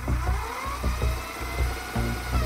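Background music with a steady beat, overlaid with a hissing, whirring tape fast-forward effect whose pitch rises and then falls.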